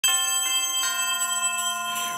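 Bell chime from a title jingle: three ringing bell notes struck in quick succession, about half a second apart, each sustaining and dying away by the end.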